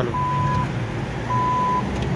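ATM cash-deposit unit beeping: a single steady beep about half a second long, repeating roughly once a second, twice here. It is the prompt for banknotes to be inserted into the open deposit slot. A steady low hum runs underneath.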